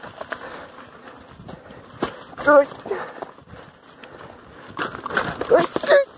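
Lowered bicycle rattling over a rough dirt trail, with irregular sharp knocks as its low frame strikes the ground and roots. Short vocal exclamations from the rider come about two and a half seconds in and again near the end.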